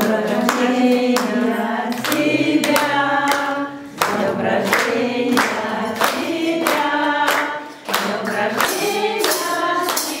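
Group of children and adults singing a devotional bhajan together, clapping hands in time at about two claps a second.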